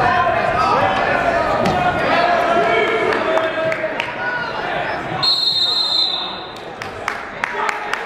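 Shouting from spectators and coaches in a gym during a wrestling takedown, then a referee's whistle blown once, about five seconds in, for just over a second to stop the action. Scattered sharp knocks follow.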